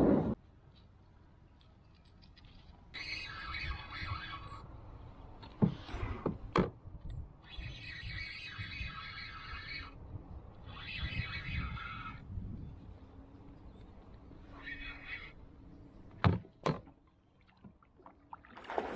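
Spinning reel being wound in, in several bursts of a few seconds each as a lure is retrieved, with a few sharp knocks in between.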